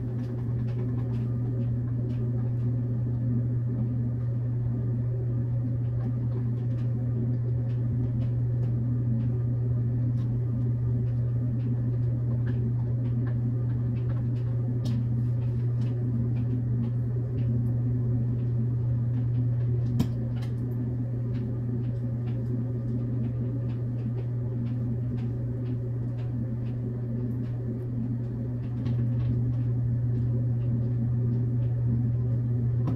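A steady low room hum throughout, with faint light clicks and taps from hand-assembling a flat-pack TV console, and one sharper click about twenty seconds in.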